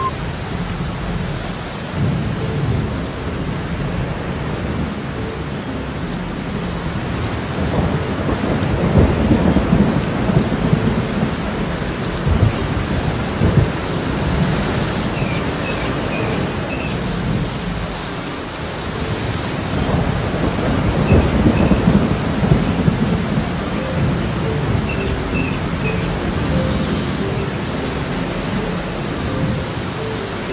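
Wind buffeting the microphone of a camera on a moving off-road vehicle, heard as a heavy, steady rumble that swells twice.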